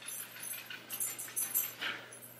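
Faint, soft rubbing and rustling of fingertips working liquid foundation into the skin of a wrist and hand, in several short strokes, the last and clearest near the end.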